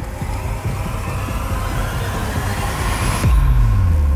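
A cinematic whoosh rising steadily in pitch for about three seconds, then a deep boom hitting near the end and carrying on low, over a background music bed: an edited transition effect.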